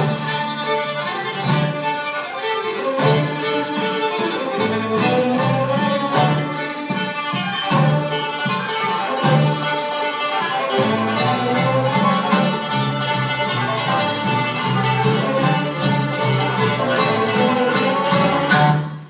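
Live bluegrass band playing an up-tempo tune: fiddle out front over acoustic guitar, banjo and upright bass.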